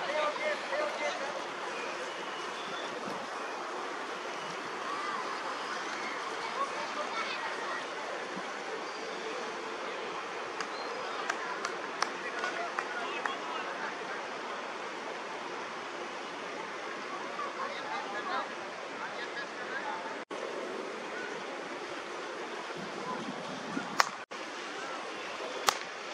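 Steady outdoor hiss with distant, indistinct voices of cricket players talking and calling, and a few faint clicks.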